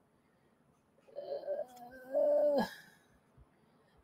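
Silence, then a woman's quiet murmur and a drawn-out hesitant "uh" about two seconds in.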